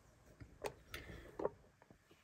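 A few faint, short clicks and taps, spaced irregularly a quarter to half a second apart.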